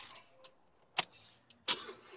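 A few sharp clicks and knocks from a car as the driver settles in and starts it. A louder click near the end is followed by a short stretch of engine sound as the engine starts.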